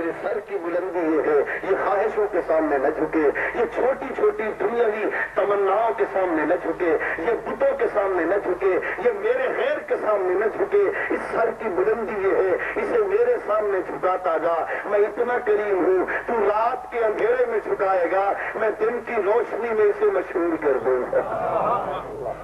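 Speech only: a man talking throughout into a microphone, with the thin, radio-like sound of a narrow-band recording.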